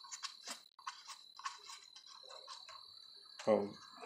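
Faint run of small plastic clicks, about five a second, as the yellow oil fill cap on a Craftsman small engine is screwed back on by hand.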